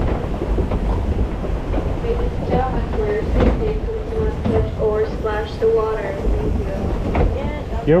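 Log flume boat rumbling and clattering as it runs along its water channel, with wind on the microphone. Voices come in over it in the middle.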